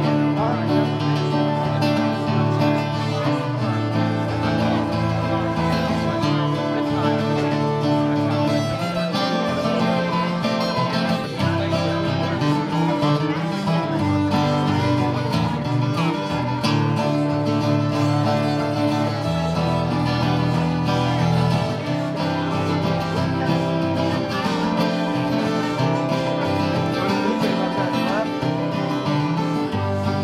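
Acoustic guitar strumming chords with a fiddle bowing a melody over it, an instrumental passage with no singing.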